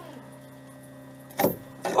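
Low steady hum, then about one and a half seconds in a short, sharp knock or creak as a homemade PVC socket gives the tank's overflow bulkhead nut a final crank.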